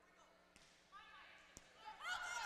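Near silence: faint gym room tone, with a few faint squeaks near the middle and a single faint click about one and a half seconds in.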